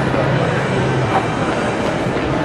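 Steady din of a shopping-mall concourse, with a low hum that stops about a second in.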